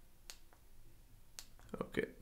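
Two faint computer mouse clicks about a second apart, then a man's voice starts near the end.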